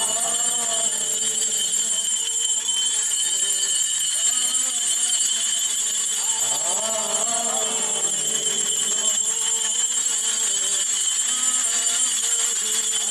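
Metal liturgical fans (marvahasa) fitted with small bells, shaken without pause, giving a steady shimmering jingle, with voices chanting faintly underneath.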